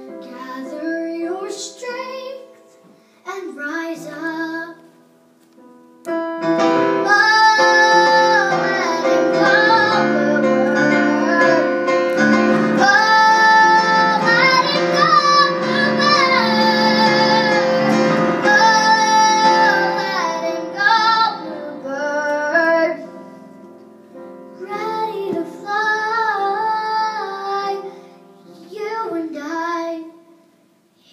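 A young girl singing a ballad, accompanied by piano played on an electronic keyboard. Her opening phrases are soft and broken by pauses; about six seconds in, voice and piano swell into a loud, continuous passage with long held notes, easing back to softer phrases near the end.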